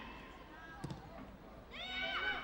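Faint shouts and calls from players on a soccer pitch, with a single sharp knock just under a second in.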